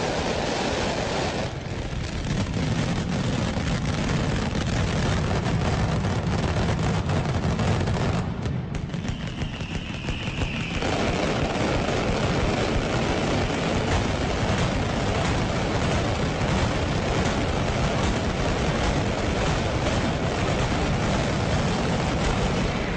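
Mascletà firecracker barrage in full fire: a continuous rapid, dense run of loud firecracker explosions. The sharp cracks briefly thin out about eight seconds in, leaving a low rumble, then the full barrage resumes.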